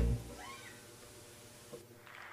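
Acoustic guitar's final strummed chord dying away, followed by a short, faint call that rises and falls in pitch.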